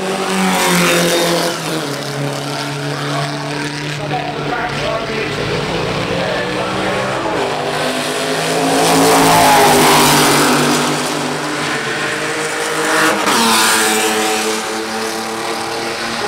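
Historic racing cars' engines running hard as they pass on a straight: one goes by about a second in, and others follow, loudest around nine to ten seconds and again about thirteen seconds in. The engine notes shift in pitch as each car passes.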